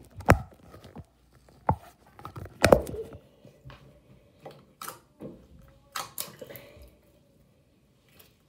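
Handling noise: about six sharp knocks and clatters of plastic slime tubs and the recording phone being moved about on a counter, the loudest about three seconds in, with quieter rustling between.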